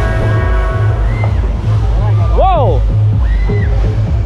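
Loud fairground dance music with a heavy bass beat pulsing about twice a second, and a short rising-then-falling cry about halfway through.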